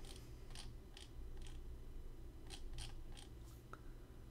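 Faint, irregular clicking at a computer, about eight sharp clicks in four seconds, over a low steady hum.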